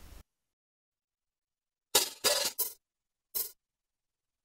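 Short one-shot acoustic drum samples, snares and hi-hats from FL Studio's RealDrumkits library, auditioned one after another in a DAW: four brief crisp hits, three in quick succession about two seconds in and a single one near the end, with digital silence around them.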